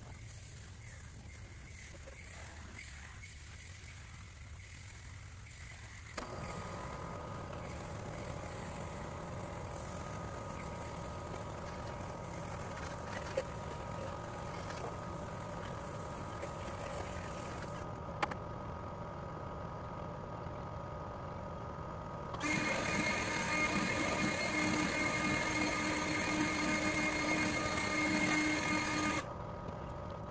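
Water spraying from a garden hose nozzle into an air-conditioner condenser unit to rinse its coil, over a steady mechanical hum. The sound shifts abruptly several times and is louder for the last several seconds.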